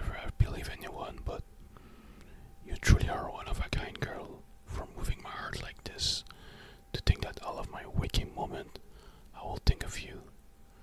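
Close-miked breaths, mouth sounds and soft clicks from a male voice, with no clear words. Sharp pops come about three seconds in, about seven seconds in and near the end.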